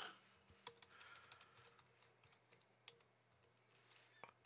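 Faint computer keyboard typing over near silence: a handful of key clicks in the first second and a half, then one more about three seconds in.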